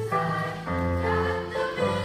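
Middle school choir singing a blues song together over accompaniment, with held notes and a low bass line beneath.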